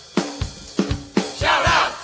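Segment jingle: a looped drum beat of sharp, punchy hits, with a group of voices shouting a short chant about halfway through.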